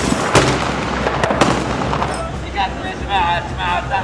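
Gunfire in street fighting: a few sharp shots in the first second and a half over a dense background of noise, then raised voices calling out in the second half.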